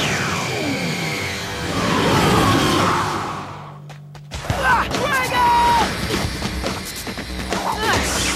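Cartoon battle soundtrack: background music under whooshing and crashing sound effects, with falling sweeps in the first seconds. The sound drops away briefly just before halfway, then comes back loud.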